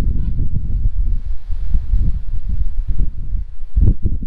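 Wind buffeting the microphone on the open deck of a cruise ship under way at sea: a loud, irregular low rumble with a fainter rush of air above it.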